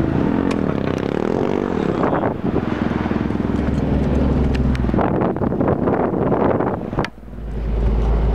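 Off-road 4x4's engine running under load, heard from inside the cab as it drives a rough, rocky trail, with scattered knocks and rattles. About seven seconds in, the sound drops out briefly and comes back as a deeper, heavier rumble.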